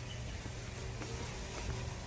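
Warehouse-store room tone: a steady low hum with a few faint, steady higher tones and no distinct events.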